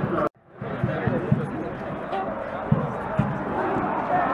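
Heavy boots of a squad of riot police marching on paving stones, irregular low thuds, with voices in the background. The sound cuts out briefly a moment after the start.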